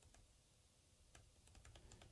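Faint typing on a laptop keyboard: a near-silent first second, then a run of quick, light keystrokes in the second half.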